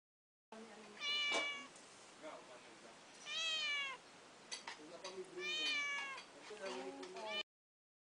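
Tabby cat meowing at close range: three drawn-out meows about two seconds apart, then a run of shorter ones near the end, with a few sharp clicks between. The sound starts about half a second in and cuts off suddenly.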